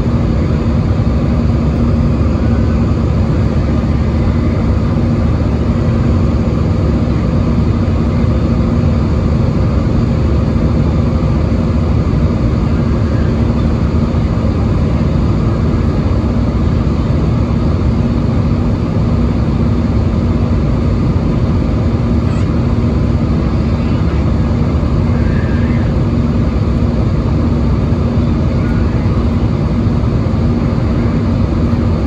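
Steady cabin noise of an Airbus A320-216 climbing after takeoff, heard from a window seat over the wing: the even drone of its CFM56 turbofan engines and rushing airflow, with a steady low hum running through it.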